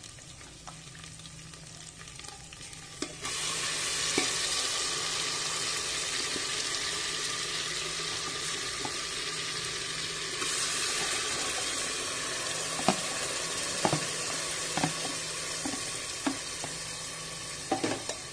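Spiced oil frying in a pot with a quiet steady sizzle. About three seconds in it jumps to a much louder sizzle as marinated meat goes into the hot oil. A few light utensil knocks on the pot sound near the end.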